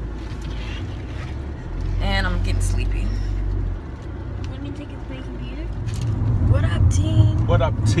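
Low, steady road and engine rumble inside a moving car's cabin, louder for a couple of seconds early on, with brief voices over it.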